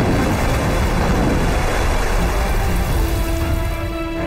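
Explosions in water with the spray coming down like heavy rain, under dramatic film score music. The noise thins about three seconds in, leaving held music notes.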